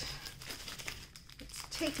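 Plastic packaging crinkling faintly and irregularly as a rolled diamond painting canvas is handled and freed from its torn plastic bag.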